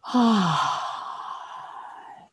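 A woman's long open-mouthed sigh: a voiced 'ahh' that falls in pitch over about half a second, then trails off into a breathy exhale that fades away.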